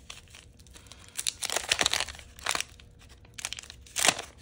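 Wax-paper wrapper of a 1989 Topps trading card pack being torn open and peeled back by hand, in irregular crinkling, crackling bursts that are loudest from about one to two and a half seconds in.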